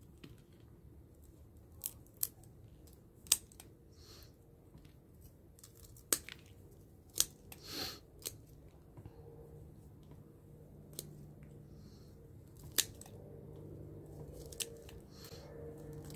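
Scissors snipping through the stems and roots of Echeveria pallida succulents: about ten sharp, faint single snips at uneven intervals, often a second or more apart.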